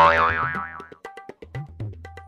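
A comedic 'boing' sound effect, starting suddenly with a wobbling pitch and fading out over about a second, over background music with a light beat.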